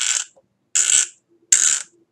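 Small glass nail polish bottle being worked open, its screw cap twisted in three short, gritty scraping strokes about three-quarters of a second apart.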